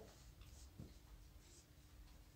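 Faint squeaks and scratches of a marker pen writing on a whiteboard, a few short strokes barely above the room's hum.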